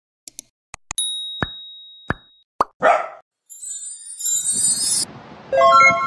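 Cartoon sound effects for an animated logo intro: a few quick clicks, a bell-like ding that rings and fades, three bubbly plops, a short whoosh, then a high twinkling shimmer.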